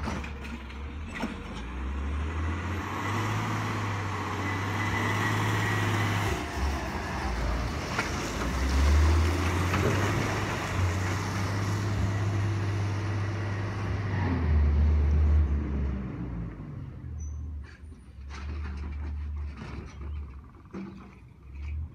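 Diesel engine of a refuse collection truck pulling away and driving past, its note stepping down and building again several times as it works up through the gears. It is loudest as it passes, then fades as it goes off up the hill.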